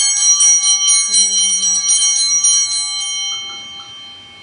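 Altar bells rung at the elevation of the host: a cluster of small bells with several pitches at once, shaken rapidly at about five strokes a second. They stop about three seconds in and ring on, fading away.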